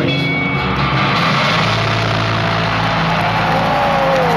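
Rock concert audience cheering in a steady loud roar over a low sustained note from the band's amplified instruments.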